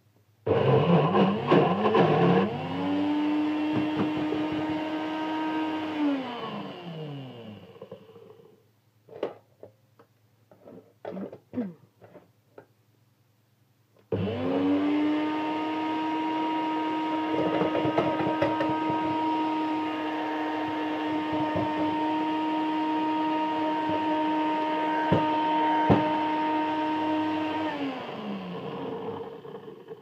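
Bullet-style personal blender running twice on a thick mixture of sweet potato, sausage and pasta. It spins up with rough chopping noise from the chunks, settles into a steady whine and winds down after about six seconds. After a few knocks it runs again for about fourteen seconds and spins down near the end; the stiff mixture is not mixing very well.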